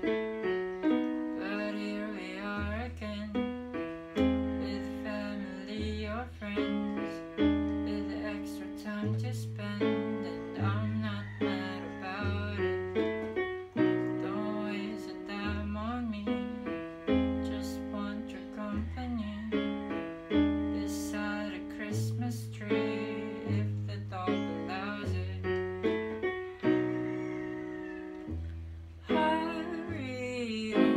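Casio electronic keyboard played as an instrumental passage: chords and a melody over a bass note that changes about every one and a half seconds, each note fading after it is struck.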